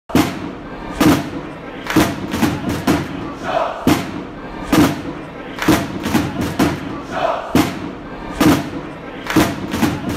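Intro music for a club video: a heavy thudding beat about once a second over a crowd-like roar of chanting voices, with two louder shouted calls, one near the middle and one later on.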